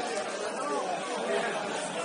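Indistinct, faraway voices of players and spectators calling across a football pitch, over a steady hiss.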